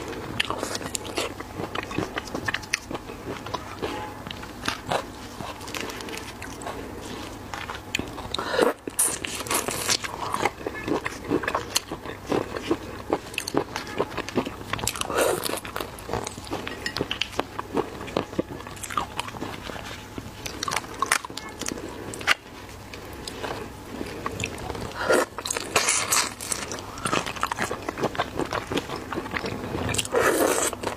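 Close-miked chewing and crunching of shell-on shrimp, with wet mouth sounds and a steady run of small crackles. Louder crunches come about a third of the way in, near the middle and near the end.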